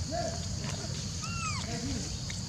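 Macaques giving short arched coo calls: about three in quick succession, the clearest and highest-pitched about one and a half seconds in, over a steady high hiss.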